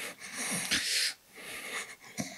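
A man's heavy breathing close to a microphone: a long breathy rush, then a shorter one.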